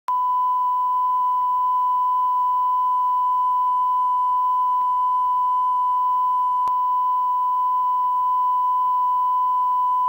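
Steady, unbroken test-card line-up tone, one high beep held at a constant pitch and level, with a faint click about two-thirds of the way through.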